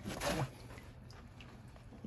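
Water splashing and dripping off a rubber-gloved hand as it comes up out of a tank of water, loudest in the first half-second and then faint.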